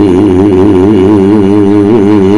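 One loud, long held sung note with a strong, even wavering vibrato over a low steady hum, typical of a dalang's sung suluk in wayang kulit accompanied by gamelan.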